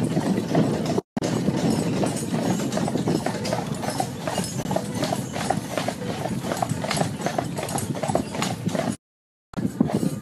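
Hooves of a pair of carriage horses clip-clopping on a tarmac lane, a steady run of hoofbeats, cutting out briefly about a second in and again near the end.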